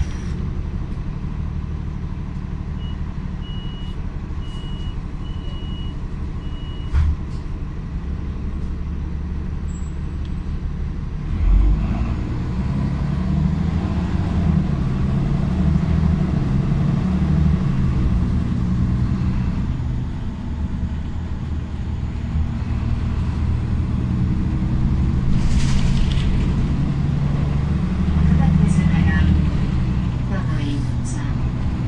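Ikarus 127V city bus engine heard from inside the passenger cabin, idling with a steady low drone while a few short high beeps sound and a thump follows about seven seconds in. About twelve seconds in the engine note rises and fills out as the bus pulls away and accelerates along the road.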